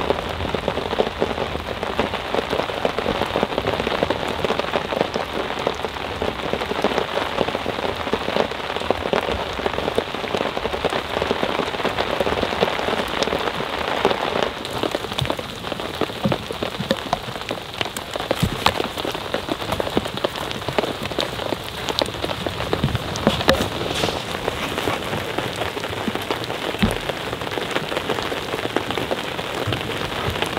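Steady rain falling, a dense patter of raindrops.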